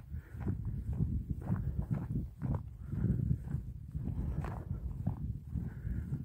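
Footsteps of a person walking on a grassy, stony chalk path, about two steps a second, over a continuous low rumble of wind on the microphone.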